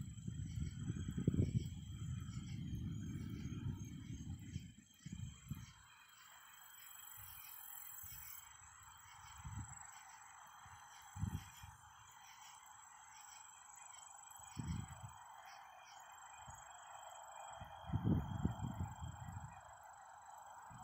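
Distant thunder from a lightning storm: a low rumble that fades after about four seconds, then several shorter low rumbles. A steady high-pitched animal chirring runs underneath.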